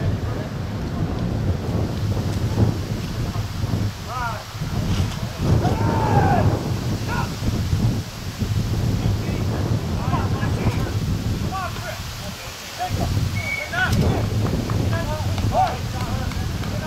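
Wind buffeting the microphone with a steady low rumble, under indistinct distant shouts and calls from people on the field.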